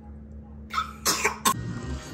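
Two short breathy sounds from a person, about a second in, then a sharp click as music starts.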